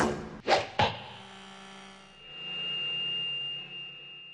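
Logo intro sound effects: three quick swooshing hits within the first second, ringing away, then a thin high tone that swells up and fades near the end.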